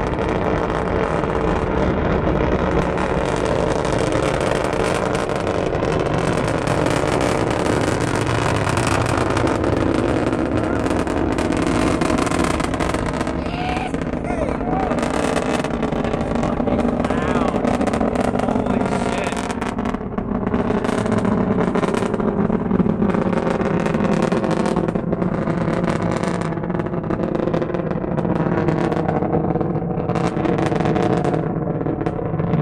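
Distant Atlas V rocket's RD-180 first-stage engine heard from miles away during ascent: a loud, steady rumble weighted toward the low end. Its upper register thins out in the second half as the rocket climbs away.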